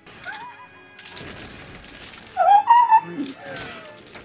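Film soundtrack of an epic battle scene: orchestral music under crashing and smashing effects, with a loud cry about two and a half seconds in.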